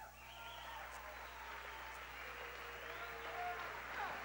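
Crowd applauding a fighter's introduction, a steady patter of clapping with a few voices calling out over it.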